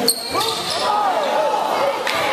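Voices yelling and calling out across a school gym during a basketball game. There is a sharp knock right at the start, followed at once by a short high squeak.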